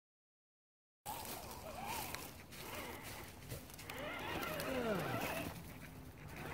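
Silence for about a second, then the electric motor and drivetrain of a radio-controlled scale rock crawler whining, its pitch rising and falling with the throttle, and one slow wind-down about five seconds in.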